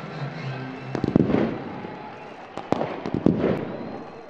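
Background music that stops about a second in, followed by a rapid run of sharp bangs and crackles, with a second cluster near three seconds.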